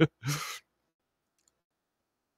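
The tail end of a man's laugh: one last laugh pulse and a breathy exhale, over within about half a second.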